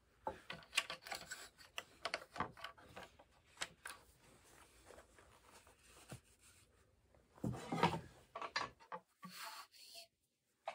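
Light knocks and rubbing as a table saw's rip fence is slid along its rail and lined up against a wood workpiece, with a louder burst of handling noise about seven and a half seconds in.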